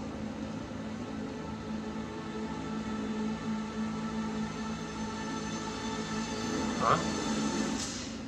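Film trailer soundtrack: a low, steady droning note with several overtones, swelling slightly, and a short sound near the end.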